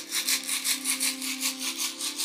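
A hand rattle shaken in a fast, even rhythm, about seven shakes a second, over a steady low musical drone.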